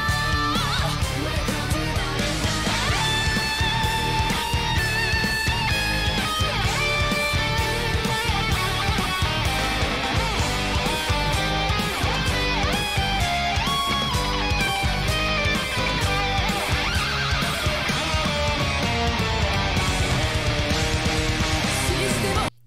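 Heavy metal song in an instrumental passage: electric guitar riffs over fast, steady drums and bass.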